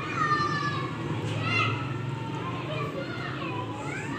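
Young children's voices calling out and shouting while they play, high-pitched and rising and falling, over a steady low background hum.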